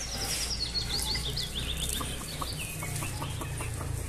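Chickens calling: a quick run of high, falling peeps in the first two seconds, typical of chicks, then a string of short clucks.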